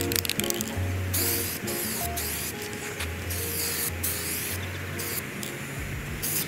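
Aerosol spray can of black trim paint hissing in a string of short bursts as coats are laid on plastic trim panels, over background music with a repeating bass line.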